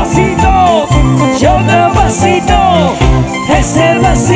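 Loud live band music: a singer's sliding vocal line over accompanying instruments and a steady low beat about two a second.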